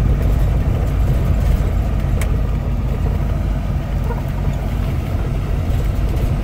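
Inside the cab of a 1982 Fleetwood Tioga Class C motorhome driving at about 25–30 mph: a steady low rumble of engine and road noise, with one sharp click or rattle about two seconds in.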